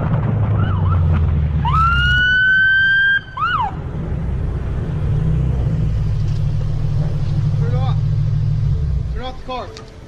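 Low, steady rumble of a car driving. About two seconds in, a high-pitched wail rises and holds for about a second and a half, then breaks off in a short rising-and-falling sweep. The rumble dies away near the end.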